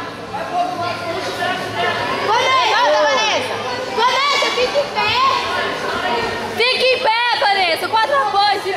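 Overlapping voices of spectators talking and calling out, with several high-pitched shouts rising and falling about a third of the way in, around the middle and near the end.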